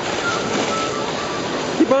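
Water splashing and churning from a swimmer's butterfly strokes, a steady wash of noise; a man starts shouting near the end.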